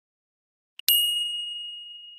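A bell-like ding sound effect: a faint tick, then a single bright ding about a second in that rings on and slowly fades.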